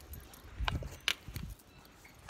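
Handling noise from an oracle card being handled: a few light clicks over soft low thumps, clustered about a second in.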